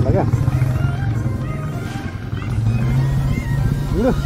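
Royal Enfield Bullet single-cylinder motorcycle engine running steadily at low speed, a continuous low pulsing note heard from the rider's seat.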